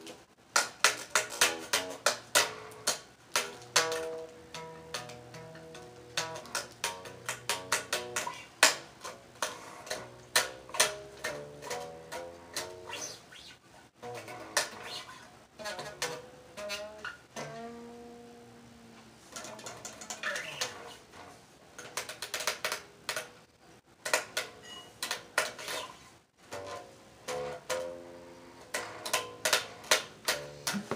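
Electric bass guitar played through a small amp, a bass line of plucked notes, each struck with a sharp click of string against the frets. There are a few short breaks and one note held longer about eighteen seconds in.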